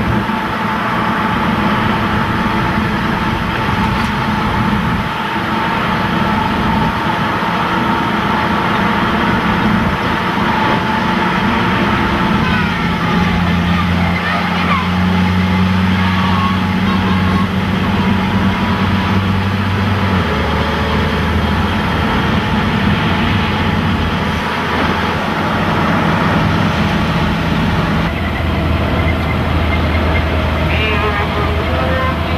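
Stryker armored vehicle driving, its diesel engine and drivetrain running with a loud, continuous drone, heard from on board. A low engine note shifts in pitch several times in the second half.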